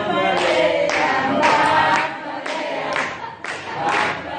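A group of people singing together without instruments. From about halfway through, the singing fades and hands clap in time, about twice a second.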